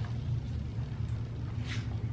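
Steady low hum of room background noise, with a short soft hiss about a second and a half in.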